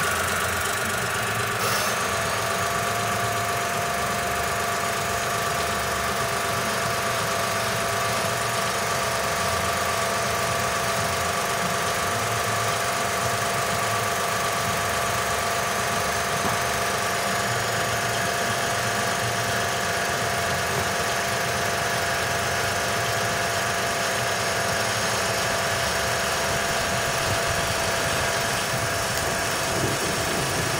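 Daewoo Matiz engine idling steadily. A steady whine joins about two seconds in and holds.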